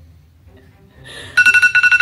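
Phone timer alarm going off past the middle with a rapid, steady high-pitched beeping, signalling that the timer has run out.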